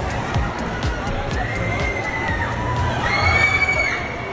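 Children's high-pitched screams on an amusement-park thrill ride: two long shrieks, a fainter one in the middle and a louder one near the end, over steady indoor crowd noise.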